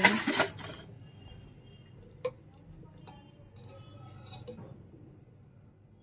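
Metal slotted spoon scraping and clinking faintly in a pressure cooker pot of boiled chickpeas, with one sharp click about two seconds in.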